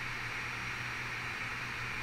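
Steady hiss with a faint low hum: the background noise of a voice recording, with no other sound.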